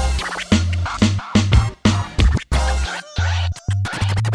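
Electronic hip-hop style intro jingle with turntable scratch effects and chopped, stuttering bass hits that cut in and out.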